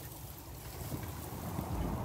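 Low rumble of wind buffeting a phone's microphone, growing slightly louder toward the end.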